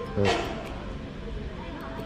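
A man's short "heh", then low steady shop background noise.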